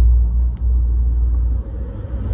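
Steady low rumble inside a car's cabin, dipping briefly about half a second in and easing off near the end.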